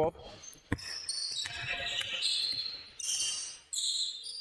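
A basketball is dribbled on a hard gym floor, with one sharp bounce about three-quarters of a second in, heard with other knocks and high-pitched sounds of play in the hall.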